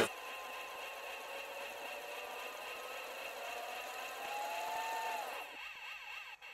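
Faint steady electronic tones, one of them gliding upward about three and a half seconds in and falling away just after five seconds, then thinning out near the end.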